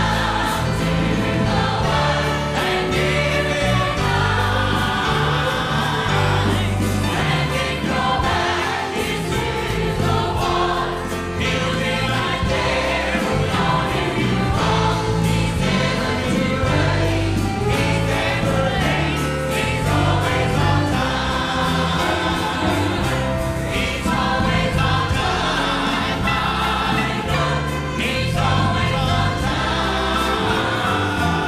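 Church choir singing a gospel song together with a band, an electric guitar among the instruments, with steady bass notes underneath.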